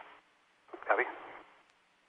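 Only speech: one short spoken word over a radio voice loop, followed by faint hiss.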